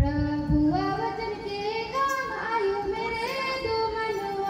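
Young female and child voices singing a melody together, holding long notes that slide between pitches. A sharp knock comes right at the start, with a few low thumps in the first half-second.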